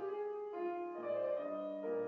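Grand piano playing a classical song accompaniment, a short passage of notes changing about every half second.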